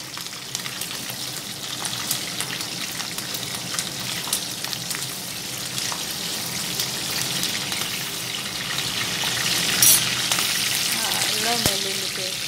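Sliced onions and green chillies sizzling steadily in hot oil in a kadai, stirred with a steel ladle. There is a short, louder burst of sizzle about ten seconds in.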